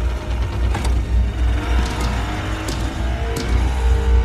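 Film soundtrack: a small boat's motor running as a steady low rumble, under sustained film score music, with a few sharp clicks.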